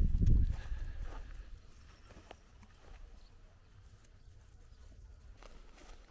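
A short low rumble on the microphone in the first second, then a faint outdoor background with a few light ticks and rustles.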